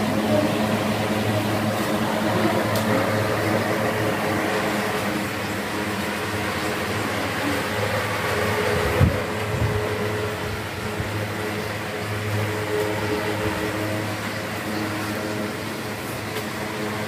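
Several electric desk fans running together: a steady whir of spinning blades over a low motor hum, with one brief low thump about nine seconds in.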